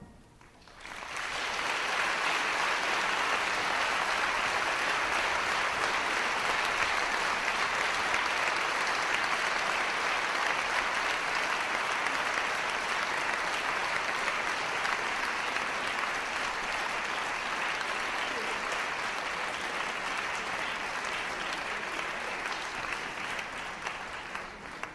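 Audience applause after a band piece ends: clapping rises about a second in and stays steady, easing a little near the end.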